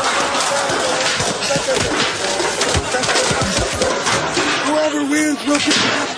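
Loud, dense mix of voices and music, with a man calling out "oh" near the end.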